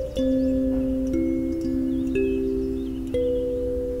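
Box kalimba (thumb piano) playing a slow melody with the thumbs: a few metal tines plucked together just after the start, then single notes about once a second, each left ringing under the next.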